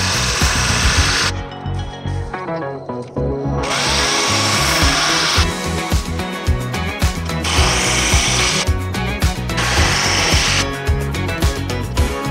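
Background music with a steady beat, over which a power drill runs in four short bursts of about a second or so each.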